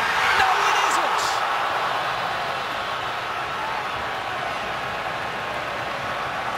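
Large stadium crowd roaring in reaction to a near miss on goal. It swells in the first second or so, then settles into a steady din.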